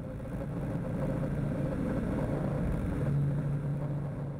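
Steady drone of aircraft engines in flight, with a low hum running under a wash of noise. It fades in at the start and grows slightly stronger in the last second.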